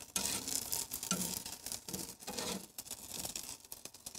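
Charcoal grill crackling and sizzling while burger buns are briefly toasted on the grate, with scattered light clicks of a metal spatula and fork on the grill.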